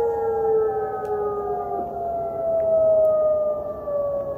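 Outdoor tsunami warning siren wailing, a sustained multi-tone wail that slowly falls in pitch. It is sounding the tsunami warning for the area.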